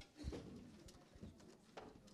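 Near silence: auditorium room tone with a few faint knocks and clicks, the loudest right at the start.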